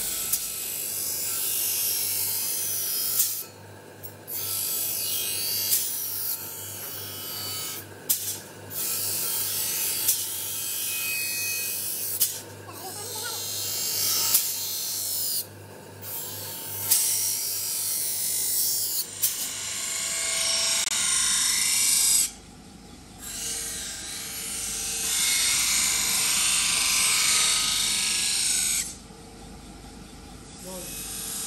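A steel knife blade being ground on a large abrasive grinding wheel: a hissing grind in about five long passes of several seconds each, broken by short pauses as the blade comes off the wheel. A steady low motor hum runs beneath for most of it.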